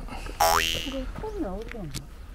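A comic cartoon-style sound effect. About half a second in, a sudden falling whistle-like tone plays, followed by a wobbling tone that warbles up and down as it sinks in pitch.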